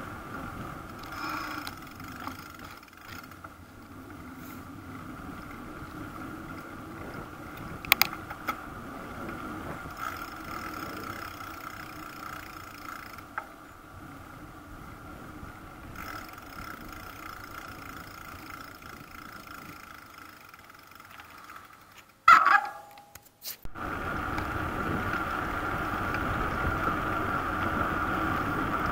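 Bicycle rolling along an asphalt road, steady tyre and wind noise on the microphone. A sharp knock comes about a third of the way through, and a loud jolt about three-quarters through, after which the riding noise is louder.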